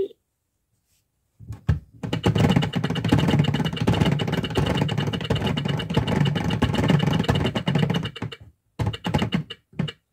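Plastic gearing of a Telly teaching clock toy clicking rapidly as its hands are wound round by hand, a fast, even run of clicks for about six seconds, with a few single clicks just before and after.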